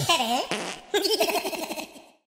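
Cartoonish logo jingle sound effect: a swooping, sliding tone, then a quickly wobbling, giggle-like tone that fades out near the end.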